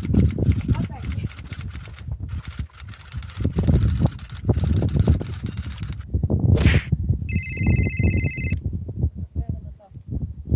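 Wind rumbling on the microphone of a camera mounted on a moving bicycle, with frequent rattling knocks from the ride. About seven seconds in, a high ringing tone sounds for just over a second and stops abruptly.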